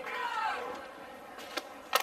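A softball bat striking the ball once, a sharp crack near the end as the batter fouls the pitch off. Faint crowd voices before it.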